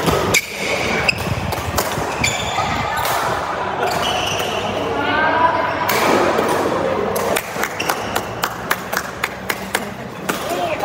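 Badminton play in a large hall: sharp racket strikes on shuttlecocks and footfalls on the court, with people talking.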